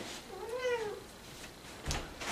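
Domestic cat meowing once: a single short call that rises and then falls in pitch, about half a second long.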